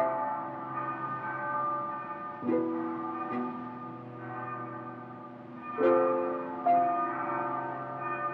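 Church bell tolling, five strokes in uneven pairs, each ringing on and overlapping the next.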